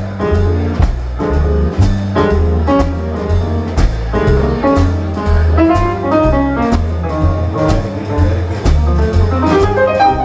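A small jazz band playing live in an instrumental passage of a blues tune: a steady bass line with drums and cymbal strokes under a lead instrument playing a melodic line.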